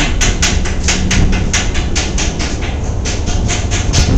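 Rapid hammer blows on metal, about five or six strikes a second in a steady rhythm, over a steady low drone of ship machinery.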